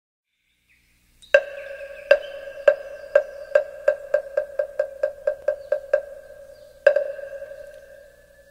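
Moktak (Korean wooden fish) struck in a speeding-up series: about fifteen strokes, from slow single knocks to a quick roll, each with a short pitched ring, then a pause and one last stroke near the end. This is the call that opens a Buddhist chant.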